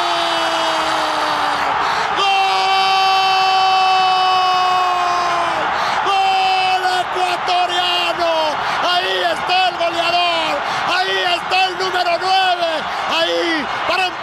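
A Spanish-language football commentator's drawn-out goal cry: two long held shouts of several seconds each, then a run of short rising-and-falling cries about every half second, over a stadium crowd cheering.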